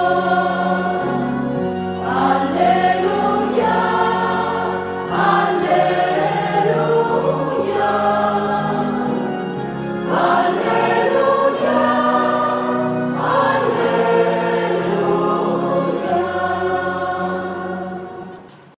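Church choir singing a Vietnamese responsorial psalm with instrumental accompaniment and steady low held notes underneath. The music fades out near the end.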